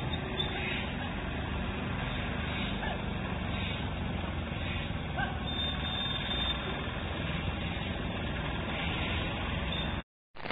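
Steady road-traffic noise of motorcycles and a light truck running along a waterlogged road.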